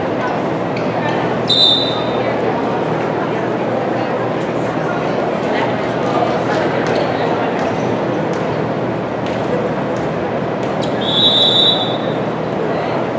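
Crowd chatter echoing in a gymnasium, with a referee's whistle blown twice: a short blast about a second and a half in and a longer one near the end, the signal for the next serve.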